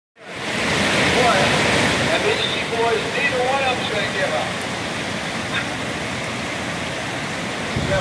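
Steady rushing roar of whitewater rapids. In the first half, distant voices call out over the water.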